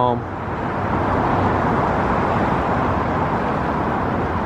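Steady rush of car traffic passing on a busy road nearby.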